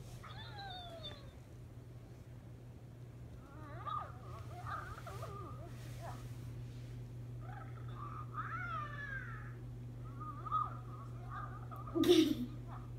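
Hatchimals Penguala electronic toy egg making squeaky chirps and coos from its built-in speaker, as an unhatched egg responding to being held and rubbed. There is one falling call at the start, then short bursts of gliding chirps through the rest.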